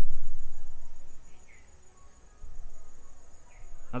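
A cricket chirping steadily in the background, a thin high rapid pulsing. A low rumble fades out over the first second.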